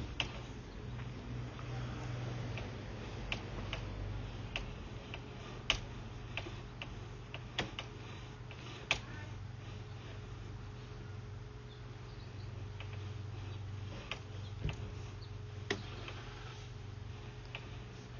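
Sewer inspection camera rig running as its push cable is drawn back through the line: a steady low hum with irregular light clicks and ticks scattered through it.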